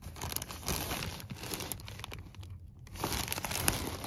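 Clear zip-top plastic bag crinkling as a hand handles it inside a fabric bag, in two stretches with a short break a little past halfway.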